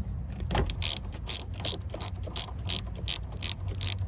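A 13 mm ratcheting line wrench clicking as it is swung back and forth on a brake-line flare nut at an ABS module, about three sharp pawl clicks a second.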